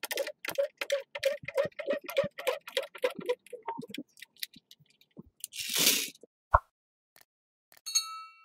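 Homemade scissor floor jack being worked by its handle under a car, giving a fast, even run of metallic clicks, about four a second, that stops after about three and a half seconds. A short hiss follows about two seconds later, then a single knock.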